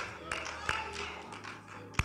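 Hands clapping in a steady rhythm, about three claps a second, over faint background music; the claps grow softer and sparser in the second half.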